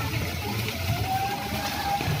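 Water-park splash pool: water jets spraying and splashing into shallow water, with children's voices; one long, slowly rising high call runs through the second half.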